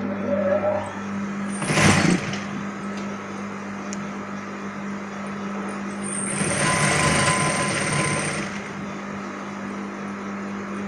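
Electric sewing machine running steadily as fabric is stitched, with a constant motor hum. It swells louder twice, briefly about two seconds in and for about two seconds around the seven-second mark.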